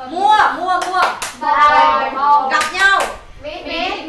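Children's voices reciting vocabulary words aloud together, with sharp hand claps about a second in and again near three seconds.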